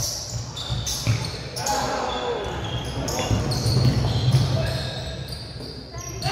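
Basketball players' sneakers squeaking repeatedly on a hardwood gym floor, with a basketball bouncing, during live play.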